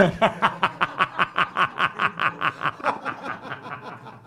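Men laughing hard in a fast, rhythmic run of laughs, about seven a second, trailing off after about three seconds.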